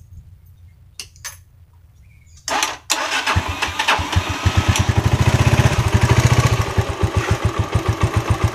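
Jialing 125 motorcycle's single-cylinder four-stroke engine starting about three seconds in, catching and running with even firing pulses. It is blipped on the throttle for a moment, then settles toward idle.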